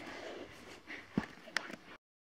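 Faint rustling of a toy doll's bouncer, fabric seat on a wire frame, being lifted and moved, with two light knocks a little past the middle.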